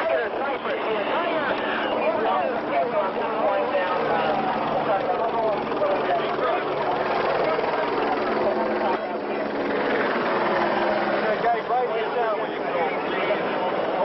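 Several men's voices talking and calling over one another, with a steady low engine drone underneath through the middle.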